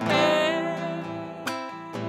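Acoustic guitar accompanying a folk samba, with one long held melody note above it that fades, and a fresh chord struck about one and a half seconds in.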